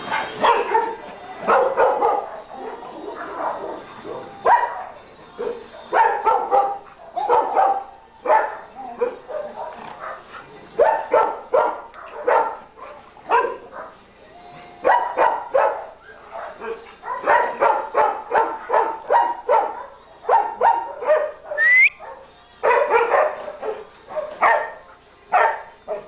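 Dogs barking in short, irregular bursts throughout, with one brief rising whine late on.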